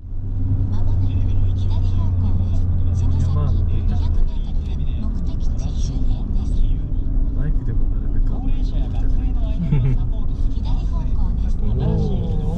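Car driving along a road, heard from inside the cabin: steady engine and road rumble, with a strong low hum that drops away about four seconds in.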